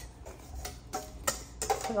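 A handful of light, separate clicks and taps as dry granola ingredients (rolled oats, seeds and nuts) are handled in a ceramic mixing bowl.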